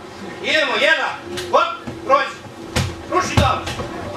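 Children's voices with several sharp slaps and thuds of bodies and hands hitting the training mat as they are thrown and break their falls.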